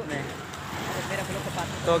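Steady low engine hum with faint voices in the background.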